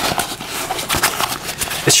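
Vinylon F synthetic fabric of a Fjällräven Kånken Mini backpack being rubbed and crumpled between the hands: a steady, crackly rustling.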